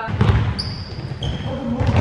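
Basketball practice in an echoing gym: a ball bouncing on the hardwood floor, short high squeaks of sneakers, and boys' voices.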